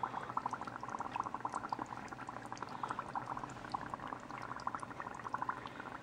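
Dry ice bubbling in water in a small cauldron: a steady stream of rapid little pops and gurgles.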